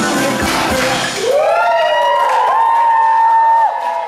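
Music plays for about the first second. Then children's high-pitched shrieks take over: two long voices that rise, overlap, hold on one note and break off just before the end.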